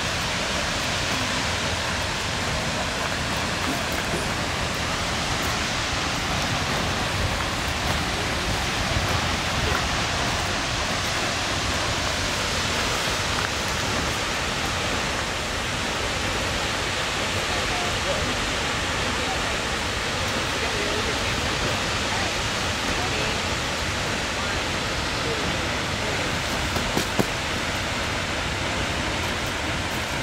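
Seljalandsfoss waterfall: the steady, unbroken rush of water plunging into its pool.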